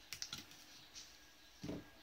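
Light plastic clicks and taps from a toner cartridge's housing being handled, a quick cluster at the start and another tick about a second in, then a duller knock near the end as a part is set down or struck.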